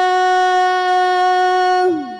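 A muezzin's voice holding one long, steady note on the drawn-out last syllable of "Hayya 'ala s-salah" in the adhan (call to prayer), sliding down in pitch and fading just before the end.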